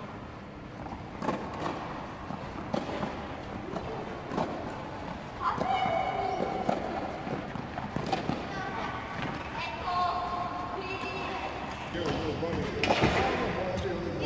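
Tennis balls struck by children's racquets and bouncing on an indoor clay court: short knocks at irregular spacing, about one every second or two, with children's voices calling out between shots.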